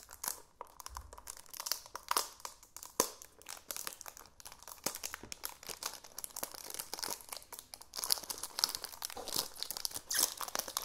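Clear plastic wrap on a cardboard cosmetics box crinkling and crackling as fingers work it loose, growing busier near the end.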